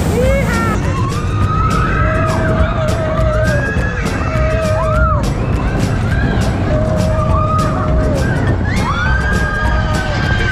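Big Thunder Mountain mine-train roller coaster running along its track with a steady heavy rumble and rapid clatter. Riders whoop and scream in long drawn-out cries that rise and fall, one after another.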